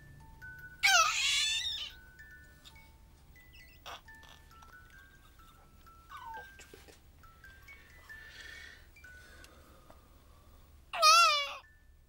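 A baby's high-pitched wavering squeal about a second in and another near the end, the loudest sounds, over a soft tune of single held chime-like notes.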